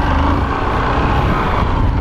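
Honda Fan 125's single-cylinder four-stroke engine running steadily under throttle as the bike circles, heavily mixed with wind rushing over the camera microphone.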